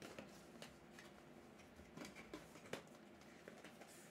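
Near silence with a few faint taps and scrapes of a cardboard prerelease kit box being handled and opened by hand.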